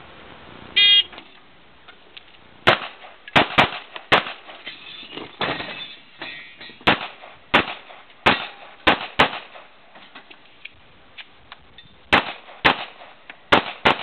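An electronic shot timer beeps once, then pistol shots follow in quick pairs and singles, about a dozen in all, with short pauses between strings.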